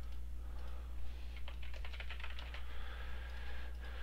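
Typing on a computer keyboard: a few short runs of keystroke clicks, entering short words, over a steady low electrical hum.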